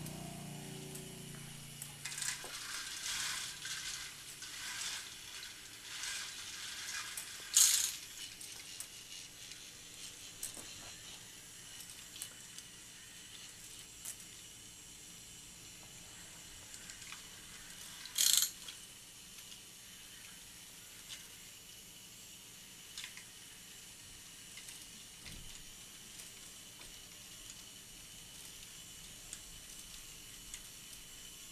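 K'nex roller coaster train rolling over its plastic track, a rattling rush that comes in repeated passes over the first several seconds, with two brief louder rushes about eight and eighteen seconds in, then faint scattered ticks.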